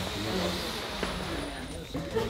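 A roomful of people blowing up party balloons: faint puffs and hiss of breath under a low murmur of voices, with a small click about a second in.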